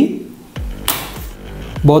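Residual-current circuit breakers (an ELCB and an RCCB) tripping with a sharp click about a second in, thrown by an earth-leakage current when the second load is switched on.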